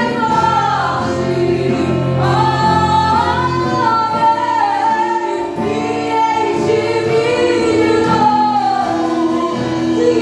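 Live gospel worship song: women's voices singing the melody over a strummed acoustic guitar and a drum kit played with sticks.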